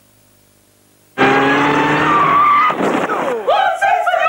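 About a second of near silence, then a car engine revving up with a rising whine over tyre-screech noise, as a TV advert sound effect. Near the end a falling swoop leads into a wavering, voice-like tone.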